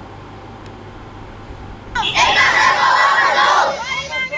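A large crowd of schoolchildren chanting a slogan together, loud and in unison. It starts about halfway through, after a stretch of low background noise.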